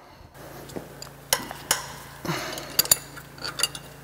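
Steel wrenches clinking against each other and against the exhaust manifold nuts and studs as the nuts are worked loose: several sharp metallic clinks with a short ring, spread unevenly.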